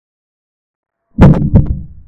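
Digital chess board's move sound effect: two wooden knocks in quick succession a little over a second in, the second fading out, as a rook is moved.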